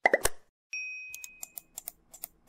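Animated-logo sound effects: two quick pops, then a bell-like ding about two-thirds of a second in, followed by a rapid run of small clicks and pops.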